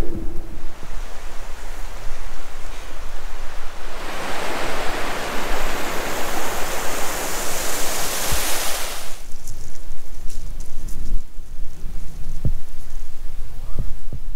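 Wind buffeting the microphone throughout. From about four seconds in, the rush of a shallow stream flowing under a footbridge rises to a loud steady hiss for about five seconds, then falls away. A few faint knocks come near the end.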